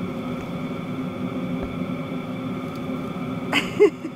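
Steady low engine hum, like a vehicle idling, with a constant faint high tone over it. A short voice sound comes near the end.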